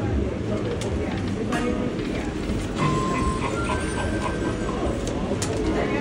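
Casino floor ambience: electronic slot machine tones and chimes over a steady background of voices and machine noise, with a short beep about three seconds in.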